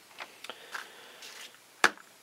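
A paper target sheet handled and moved on a tabletop, with a few faint rustles, then a single sharp tap near the end.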